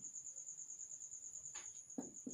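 A cricket chirping in a steady, high, evenly pulsing trill. A faint marker stroke on the whiteboard is heard near the end.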